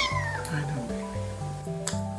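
A young kitten's high meow falls in pitch and trails off at the start, over soft background music with sustained notes. A short click comes near the end.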